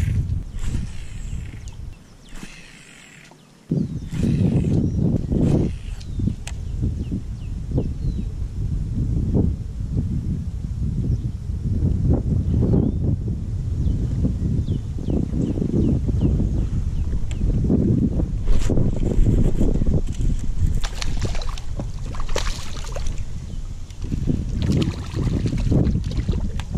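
Wind rumbling on an action-camera microphone over water sloshing around a fishing kayak, with splashing near the end as a hooked bass thrashes at the surface.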